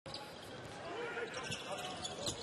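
Basketball game sound in an arena: steady crowd noise with a ball dribbling on the hardwood court.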